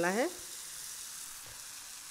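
Spinach batter sizzling steadily in a lightly oiled hot pan, just after being poured in.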